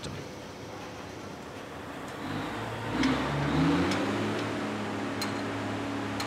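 Putzmeister concrete pump's engine: a rushing noise, then about two to three seconds in the engine note rises as it revs up and settles into a steady drone. It is working to drive concrete up the pipeline to the top of the tower. A single sharp click comes about five seconds in.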